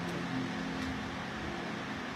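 A pause in kora playing: the last plucked notes fade out under a steady background hiss.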